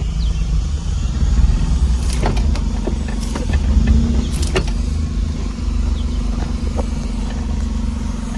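Car engine running at low speed, heard from inside the cabin as a steady low hum, with a few light clicks between about two and four and a half seconds in.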